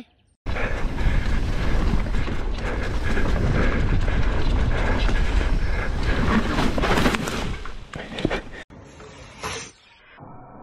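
Mountain bike ridden fast down a rough forest trail, heard from a camera on the bike or rider: loud rumbling wind noise on the microphone with the rattle and clatter of the bike over roots and dirt. It starts about half a second in and cuts off about a second and a half before the end.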